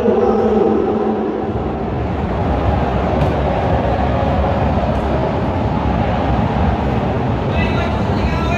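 Stadium crowd noise: a dense din of many voices with a low rumble, as a supporters' chant trails off in the first second or two.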